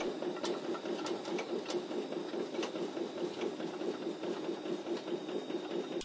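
SMG PlanoMatic P928 track paver running, a steady fast mechanical chatter with a few faint clicks.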